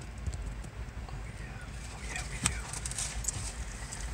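Empty autorack freight cars rolling past, with a low rumble and, from about two seconds in, a run of clicks from the wheels crossing rail joints.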